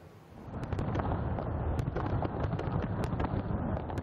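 Fireworks going off: a dense run of rapid cracks and pops over a low rumble of bangs, starting about half a second in.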